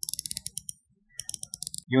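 Stainless-steel dive-watch bezel of a Titan Octane Hyper Lume being turned by hand, its unidirectional ratchet giving two quick runs of rapid clicks with a short pause between.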